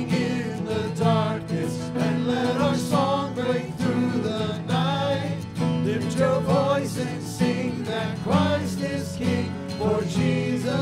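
Church worship band playing a contemporary worship song: voices singing the melody over strummed acoustic guitar and steady chords.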